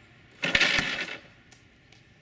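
A rubber-band-powered sled carrying a slingshot crossbow is fired. A sharp snap of release comes about half a second in, with two heavy knocks as the sled hits its buffered end stop and launches the 20 mm steel ball. A lighter click follows about a second later.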